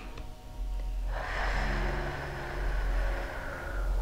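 A woman's slow, deep breath out, starting about a second in and lasting nearly three seconds, softening slightly towards the end.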